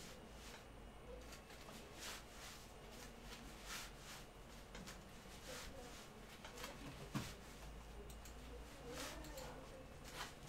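Faint rustling of a person moving on an exercise mat, in scattered short brushes, with a soft thump about seven seconds in.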